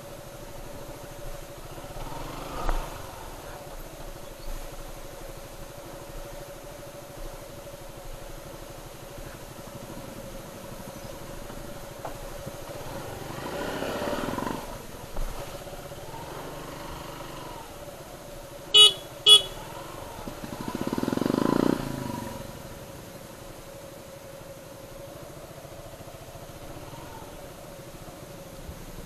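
Suzuki Gixxer SF's single-cylinder engine running at low speed, with the revs swelling up about halfway through and again about three quarters through. A motorcycle horn toots twice in quick succession about two-thirds of the way in.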